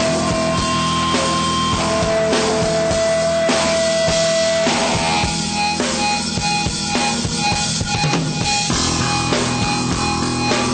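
Rock band playing live without vocals: electric guitar and drum kit, with long held lead notes over the beat in the first half.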